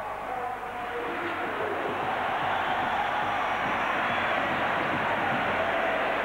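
Stadium crowd noise from the stands, a steady roar that swells over the first couple of seconds and then holds level.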